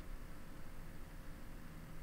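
Quiet room tone: a faint, steady hiss with a low hum underneath and no distinct event.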